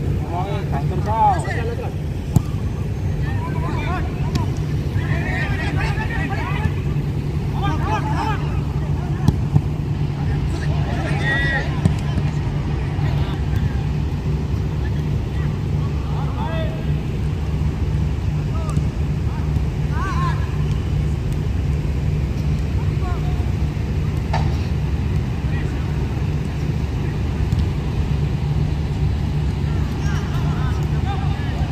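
Footballers' distant shouts and calls during a training drill, with a few sharp knocks of a football being kicked, over a steady low rumble.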